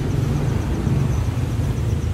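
Low, steady rumble of a diesel van engine idling, with a faint, rapid high-pitched ticking over it through the first half.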